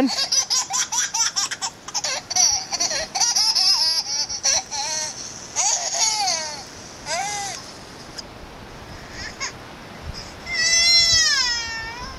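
Recording of a baby whimpering and babbling, played through a smartphone's small speaker, ending in one long wailing cry about ten seconds in.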